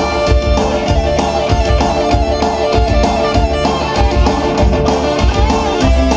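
Live dangdut band music played loud through a PA: electric keyboard and guitar over a steady drum beat.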